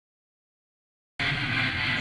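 Dead silence for about the first second, then the sound cuts in suddenly: steady background noise of a weight room.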